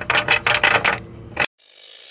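A quick run of light clicks and rattles that dies away, with one last click about a second and a half in; then the sound cuts off suddenly and a hiss swells slowly upward.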